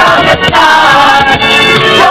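Loud amplified music with a woman singing into a microphone over it, above a steady beat.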